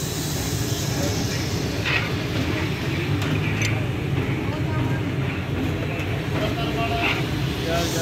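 Busy street-stall ambience: a steady low rumble of traffic under background chatter, with a few light clinks.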